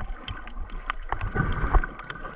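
Underwater sound picked up by a submerged camera: muffled water movement with a low rumble, broken by irregular sharp clicks and low thumps, busiest past the middle.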